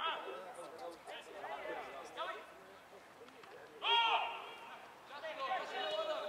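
Voices shouting across a football pitch, with a loud, drawn-out shout about four seconds in.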